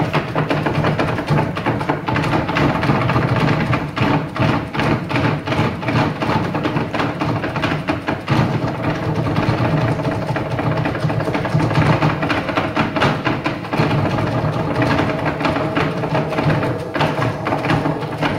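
Live electro-flamenco band music played loud, with no singing: a busy run of sharp percussive strikes over steady sustained synth tones.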